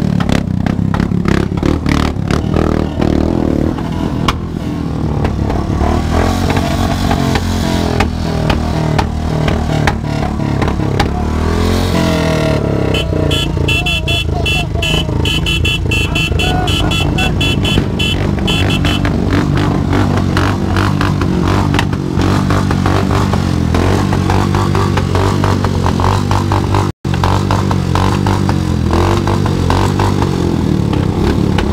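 Motorcycle engines running and revving at a burnout session, with music playing over them.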